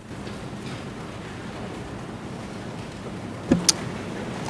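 Steady background hiss of room noise through the courtroom sound system, cutting in with a click. A brief knock and a sharp click come near the end.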